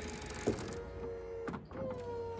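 BMW 4 Series Convertible's folding metal hard-top mechanism lifting the stowed roof in the boot: a steady motor whine, with a click about half a second in and a knock about one and a half seconds in, after which the whine settles slightly lower in pitch.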